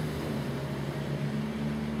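Steady low hum with a faint hiss underneath: constant background machine or electrical noise, level and unchanging.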